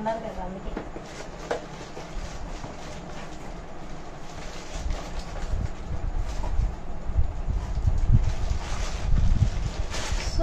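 Cardboard packaging and plastic wrapping handled while a stainless steel frying pan is unboxed. There is rustling and crinkling with a few sharp clicks, and low bumps and handling noise grow louder in the second half.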